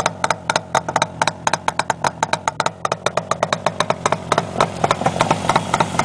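1967 Yamaha YR1 350's two-cylinder two-stroke engine idling with the baffles out of its mufflers, a steady, rapid train of sharp exhaust pops that sounds pretty tough. The motor sounds nice, with no excessive piston slap.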